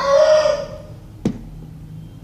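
Rooster crowing loudly, the held last note of the crow ending under a second in. A sharp click follows just after a second.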